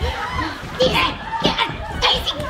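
Several voices shouting and yelling over one another in a heated on-stage row.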